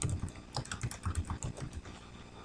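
Computer keyboard typing: a quick run of keystrokes that stops near the end.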